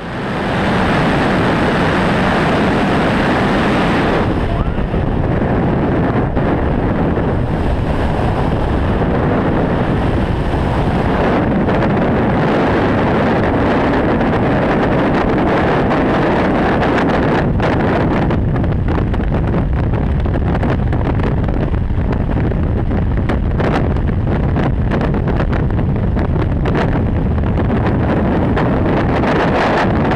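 Loud, steady freefall wind rushing over the camera's microphone during a tandem skydive, fluttering on the mic through the later part. It fades in at the start, and its sound changes about four seconds in, as the jumpers leave the plane's open door.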